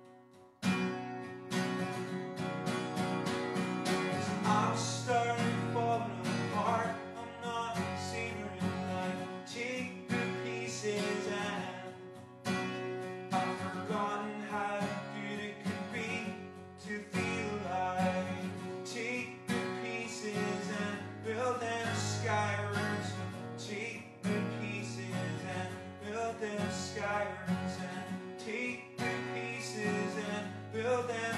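Acoustic guitar strummed in chords, coming in sharply about a second in after a brief hush and then playing on steadily.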